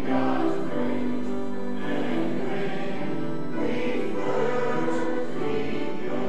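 A church congregation or choir singing a hymn, in slow sustained chords.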